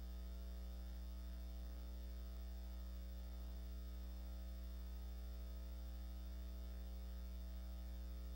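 Faint, steady low electrical mains hum with a light hiss over it, unchanging.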